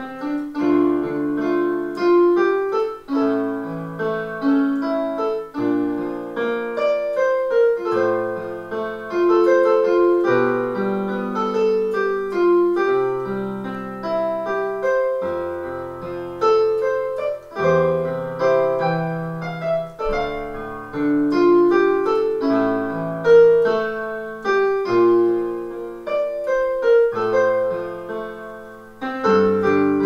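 Solo piano sound from a digital stage keyboard, played with both hands: sustained low notes and chords under a melody in the upper range, with no singing.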